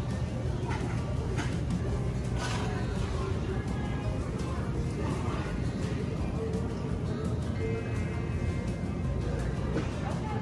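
Music playing over the steady low hum of a supermarket, with faint indistinct voices and a few light clicks.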